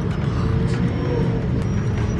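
Bus engine and road rumble heard from inside the passenger cabin: a steady deep drone, with a faint steady whine above it in the first second.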